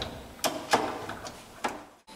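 A few sharp clicks and knocks as the sampling module is worked out of the front of a VESDA-E aspirating smoke detector's housing.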